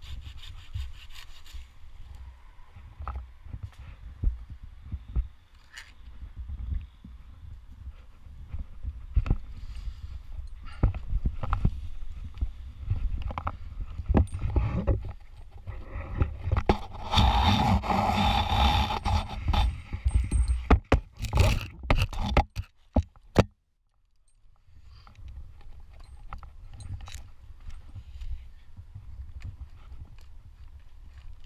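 Folding pruning handsaw cutting ash branches: rough rasping strokes, densest and loudest a little past the middle, followed by several sharp cracks of wood. A low rumble runs underneath on the helmet-mounted microphone, and the sound drops out for about a second two-thirds of the way through.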